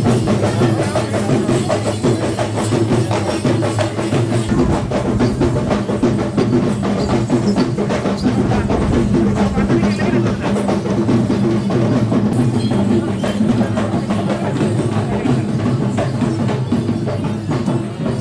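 Drum-led percussion music with dense, fast strokes and sharp clacking hits over a steady held tone.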